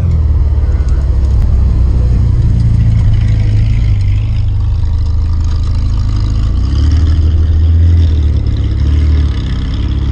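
Lamborghini Aventador's V12 running at low revs as the car pulls out and turns away, a deep steady drone. It swells a little between about seven and nine seconds in, then begins to fade.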